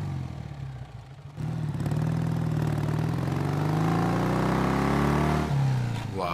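Cruiser motorcycle engine revving. Its pitch climbs steadily for about four seconds, then drops near the end.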